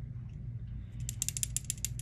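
A small mechanism turned by hand gives a quick run of about ten sharp ratcheting clicks in under a second, starting about a second in.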